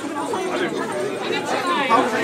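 Chatter of several people talking at once, with no music.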